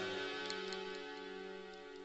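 A soft held chord from the accompanying instruments, slowly fading, with a couple of faint ticks about half a second in.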